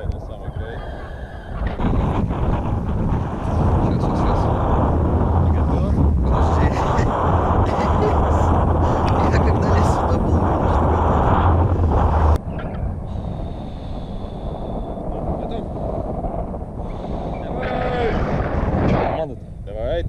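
Wind buffeting an action camera's microphone: a heavy, steady low rumble that drops off suddenly about twelve seconds in, leaving lighter wind noise.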